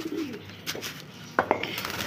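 Domestic pigeons cooing in a loft, with a short falling coo at the start. Two sharp clicks come a little past the middle, from the wire-mesh cage.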